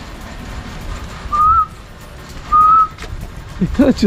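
Two short whistled notes, each one clear pitch that rises slightly, about a second and a quarter apart.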